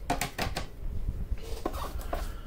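Hard plastic graded-card slabs being handled and swapped: a few light clicks and knocks in the first half-second and again near the end, over low handling rumble.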